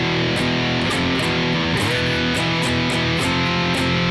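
SG electric guitar through heavy distortion playing a slow doom-metal riff of sustained power chords, shifting between chords a minor second apart about one and two seconds in.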